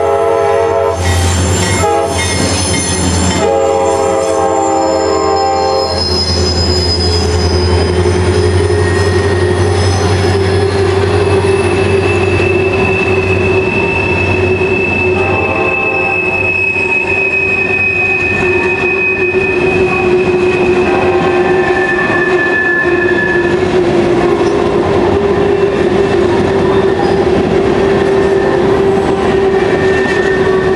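Diesel freight locomotive horn sounding several blasts, the last a long one ending about six seconds in, over the rumble of a CSX EMD GP40-2 passing close by. Then a string of loaded covered hopper cars rolls past with a steady wheel squeal and a few higher squeals.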